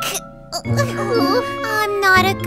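A cartoon character's voice speaking over light, tinkling background music, both coming in about half a second in after a brief lull.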